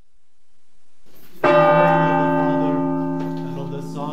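A deep bell struck once about a second and a half in, ringing on with a slow fade.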